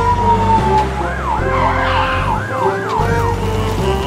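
Fire-truck siren sound effect: a long falling tone, then about six quick rising-and-falling wails, over steady background music.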